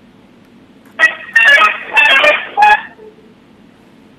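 Garbled, beeping sound over a telephone line: from about a second in, a run of four or five loud bursts lasting about two seconds, each made of short tones jumping about in pitch.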